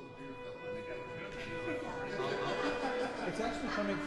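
Fiddle and whistle sounding long held notes, one for about two and a half seconds and a lower one starting near the end, with people talking over them.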